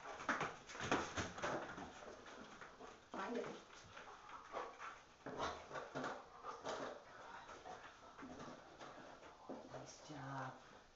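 A yellow Labrador retriever searching among plastic containers on a carpet for a target scent: irregular sniffs, rustles and light knocks as it noses the containers.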